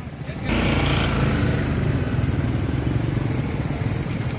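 A motorcycle engine running steadily, coming in suddenly about half a second in.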